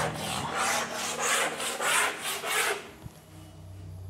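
A board eraser rubbing back and forth across a teaching board in quick strokes, about three a second, wiping it clean; the strokes stop near three seconds in.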